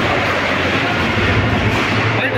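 Loud, steady din of a crowd, with no single voice standing out.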